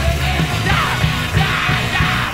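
Punk rock band playing loud and dense: distorted guitars, bass and pounding drums, with yelled vocals over the top.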